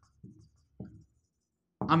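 Marker pen writing on a whiteboard: a couple of short strokes in the first second as the word 'Ammeter' is written.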